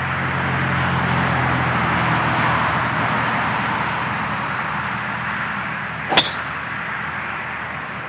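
A driver striking a golf ball off the tee: one sharp, short crack about six seconds in, over a steady background rush that swells and then slowly fades.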